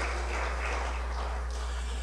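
Light, scattered hand-clapping from a small church congregation, tapering off, over a steady low hum.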